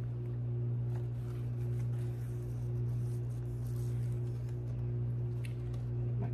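A steady low hum, with a fainter tone above it that pulses about twice a second.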